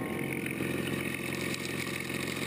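Engine of a 1926 wooden motorboat running steadily, with water splashing.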